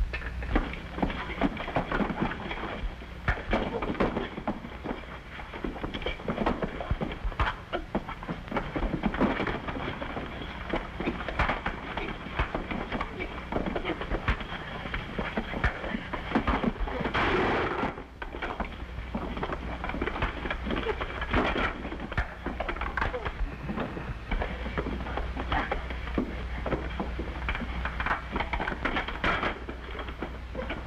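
A fistfight in an old film soundtrack: a steady run of punches, thuds and scuffling, with men's grunts and a louder crash about seventeen seconds in. A low steady hum lies underneath.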